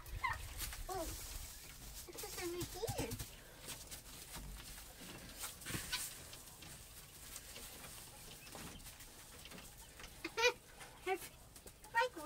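Quail giving a few short, soft calls while wood shavings rustle as they are scooped from a plastic bucket and tossed by hand.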